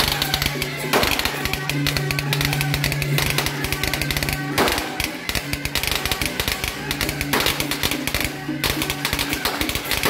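Beiguan procession music: rapid clashing of cymbals and gongs with drum strokes, over a held low tone that comes and goes.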